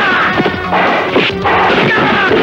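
Fight-scene soundtrack: dramatic background music over a few sharp dubbed whacks and crashes of blows landing, stick or club hits added as film sound effects.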